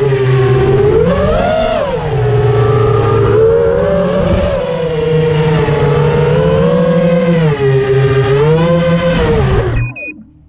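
Four RaceDayQuads 2205 2450kv brushless motors and propellers of a small FPV quadcopter whining in flight, the pitch rising and falling with the throttle. The sound cuts off suddenly near the end as the quad touches down in the grass.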